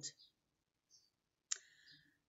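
A single sharp click about one and a half seconds in, with a short ringing tail, in otherwise near silence.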